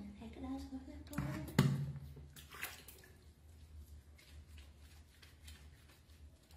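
Shallow water in a plastic basin splashing and squishing softly and irregularly as a baby monkey is lathered and scrubbed by hand. A brief voice comes near the start, and a sharp knock about a second and a half in.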